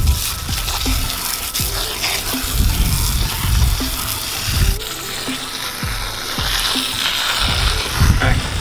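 Garden hose spray nozzle hissing steadily as a jet of water hits driftwood and the grass around it.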